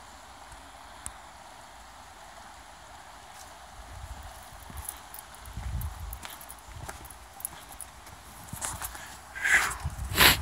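Footsteps on a rocky dirt trail, an uneven run of thuds and scuffs starting about four seconds in over a steady hiss. Two louder scrapes come near the end.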